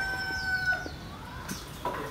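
A rooster crowing: its long held final note ends with a short drop about three-quarters of a second in. Faint, high, short falling chirps of small birds follow.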